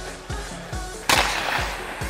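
A hockey slap shot cracks sharply about a second in as the 100-flex stick strikes the ice and puck, with a ringing tail echoing off the rink. Background music with a steady beat plays throughout.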